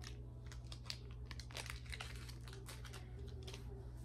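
Thin plastic packaging crinkling as it is handled, giving a run of light, irregular crackles.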